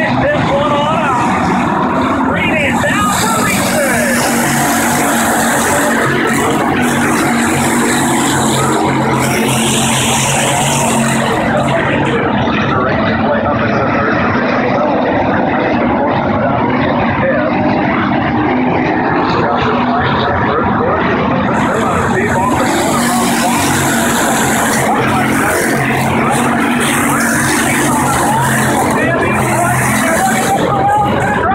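A field of hobby stock race cars running at racing speed on a dirt oval, a loud continuous engine din. It gets a harsher, brighter edge twice as the pack comes by close.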